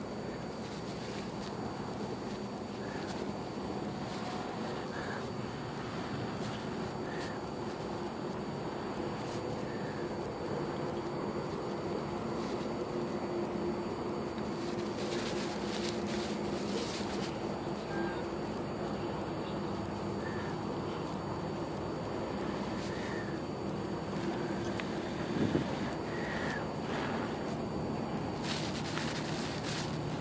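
Breath blown in short bursts onto a smouldering tinder nest of paper tissue, lit from char cloth, to coax it into flame: about halfway through and again near the end. Under it runs a steady low hum with faint chirps.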